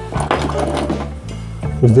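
Steady background music, with a spoken word near the end.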